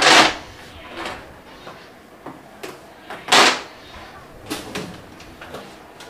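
Two brief scraping sounds about three seconds apart, with a few light knocks between them: handling noise at a top-loading washing machine.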